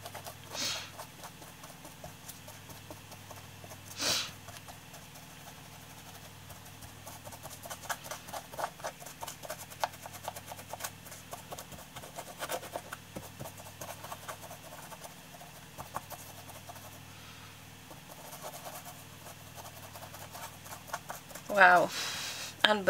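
A small paintbrush dabbing and tapping on a textured mixed-media canvas, heard as a run of soft, irregular ticks through the middle, over a steady low hum. Two short louder noises come about half a second in and again at four seconds.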